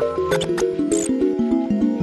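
Upbeat intro music: a stepping melody over a quick, even beat. A few short, bright, high-pitched sparkle effects come in about half a second and a second in.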